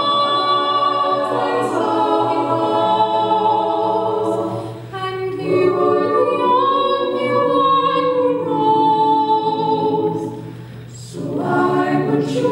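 Mixed male and female a cappella group singing slow, sustained chords in close harmony, with no instruments. There are brief breaks between phrases about five seconds in and again near the end, before the voices come back in.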